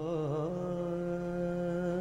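Opening of a Sikh shabad kirtan: harmonium with a wordless vocal line, wavering at first and then settling into one long held note about half a second in.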